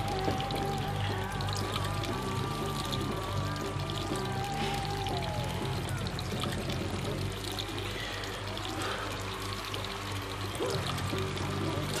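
A steady stream of liquid pouring, a sound effect of men urinating at urinals, over background music with a stepping bass line.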